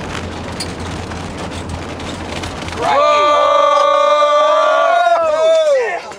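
Vehicle running downhill with a steady cabin rumble, then about three seconds in a loud squeal of several pitches at once from newly fitted brakes being applied, holding for nearly three seconds and bending in pitch as it dies away near the end.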